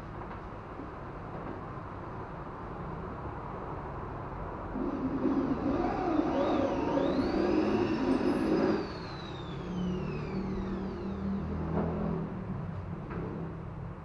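A hand-held electric drill boring into the wooden bridge area of an acoustic guitar top: it runs loudly for about four seconds with a rising and falling whine, then runs again more quietly at a lower pitch for about two seconds.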